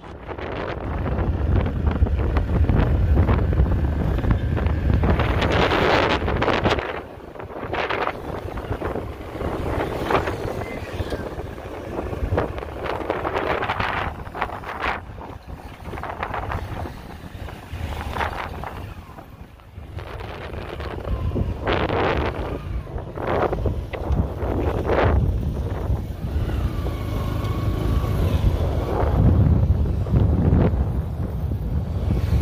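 Road traffic going by on an expressway, several vehicles passing in swells of noise, with wind rumbling on the microphone, heaviest in the first few seconds.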